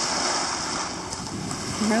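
Small waves washing onto a pebble shore, a steady rushing wash, with wind on the microphone.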